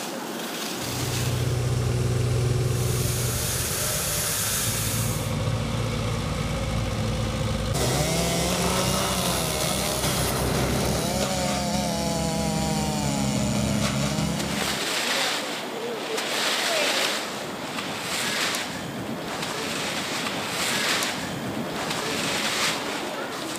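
A small engine runs from about a second in. In the middle, a chainsaw revs up and down as it cuts a fallen tree. After that the engine stops, leaving repeated rustling and scraping strokes, typical of rakes on dry leaves.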